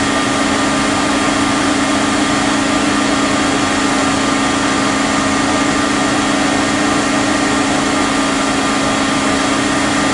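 Heckler & Koch BA 40 vertical machining center running under power: a steady, unchanging hum with a fainter whine above it.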